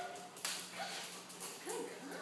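A dog making a few short, high whines, with a brief rustle about half a second in.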